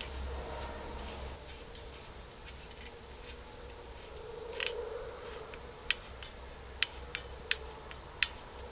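A steady high-pitched insect trill that breaks off briefly a little past three seconds in. Several sharp clicks in the second half as the blade of a folding bow saw is fitted into its frame.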